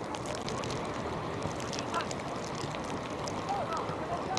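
Outdoor football pitch ambience: steady wind noise on the microphone with scattered faint ticks, and distant players' shouts across the pitch, one about halfway through and more near the end.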